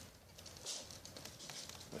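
Faint rustling handling noise from a gloved hand moving a small IP camera, with a brief louder rustle about two-thirds of a second in.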